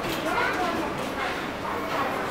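Indistinct talking voices, too unclear to make out words.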